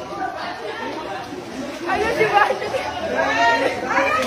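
Several people chattering at once, overlapping voices growing louder about halfway through, in a large roofed pool area.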